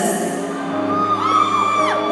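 Soft piano chords held under a pause in the talk, in an arena. About a second in, a fan gives a long high whoop that drops away just before the end.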